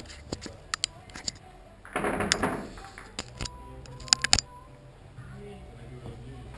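Sharp clacks of heavy Russian billiard balls striking each other and the cue on tables in the hall: several single clicks, with the loudest pair about four seconds in. A brief noisy rush about two seconds in and faint talk sit underneath.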